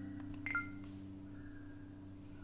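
The last chord of an acoustic guitar ringing out and slowly fading, with a click and a short high squeak about half a second in.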